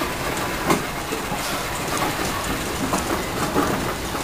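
Steam traction engine running past at walking pace on a road: a steady mechanical clatter with sharp knocks now and then.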